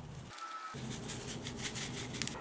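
Light, quick rustling of a torn seasoning-flake packet being shaken over a plate of noodles to sprinkle out its sesame and seaweed flakes.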